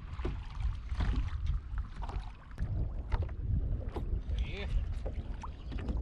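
Wind on the microphone and water lapping around a kayak, a steady low rumble with scattered light clicks and knocks.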